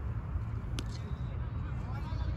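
Outdoor background of low steady rumble with faint distant voices, and one sharp click about a second in.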